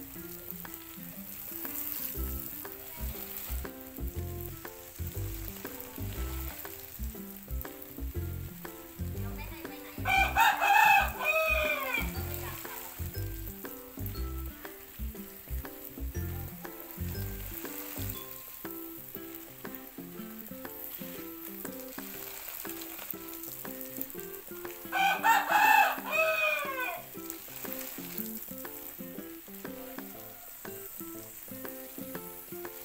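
Steady hiss of water spraying onto a garden bed, with a rooster crowing twice: once about ten seconds in and again about twenty-five seconds in, each crow the loudest sound.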